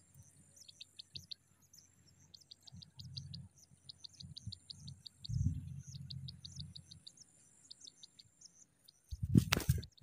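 Pipit nestlings begging at the nest with faint, rapid, high-pitched peeps in short runs. A brief loud rustle comes near the end.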